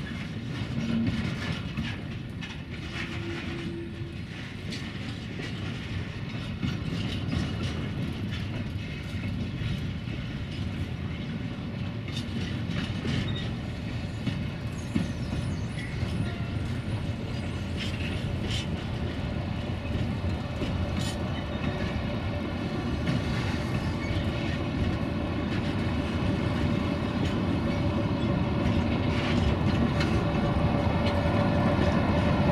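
Freight wagons rolling slowly with clickety-clack over the rail joints as a shunting consist passes. Near the end, two LDH1250 diesel-hydraulic shunting locomotives at its rear come close, and their engine sound grows louder with a steady whine.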